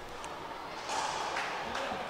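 Indistinct murmur of voices in a large hall, rising a little about a second in, with a few faint taps.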